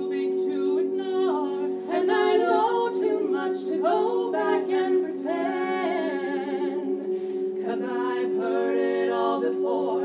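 Women's choir singing a cappella: the ensemble holds steady chords beneath a higher melodic line that moves and bends.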